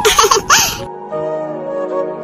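A high-pitched cartoon voice laughing briefly in the first second, followed by background music with soft held notes.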